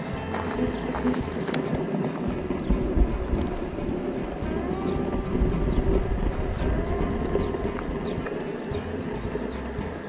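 Footsteps crunching over a beach of sea glass and pebbles, with wind rumbling on the microphone.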